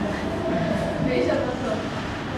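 A person laughing briefly over the steady background noise of an ice rink.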